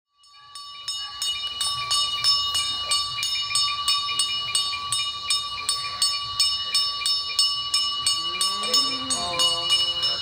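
A temple hand bell rung rapidly and continuously, about three strokes a second, the ringing of each stroke running into the next so it sounds as one steady chime; it fades up at the start. Near the end a voice begins chanting over the bell.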